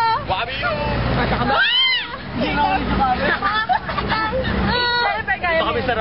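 A group of teenagers chattering and shouting over one another, with one loud rising-and-falling shout about two seconds in. A steady low rumble from the pickup truck they are riding in runs beneath the voices.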